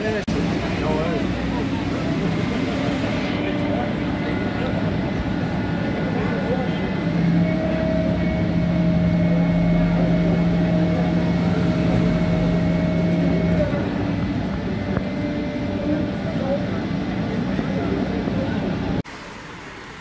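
Fire brigade turntable ladder truck running in a busy street, with people talking around it. A steady low engine hum swells for about six seconds in the middle, then eases. The sound drops to a quieter street scene about a second before the end.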